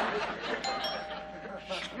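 Two-tone doorbell chime, a higher note followed by a lower one, both ringing on for about a second. Studio audience laughter fades out just before it.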